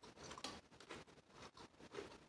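Near silence with faint, soft chewing: a few quiet mouth clicks as a lettuce wrap is chewed with the mouth closed.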